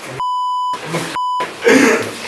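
Two steady high censor bleeps, the first about half a second long and the second shorter, each blanking out a spoken word, with snatches of a man's speech between and after them.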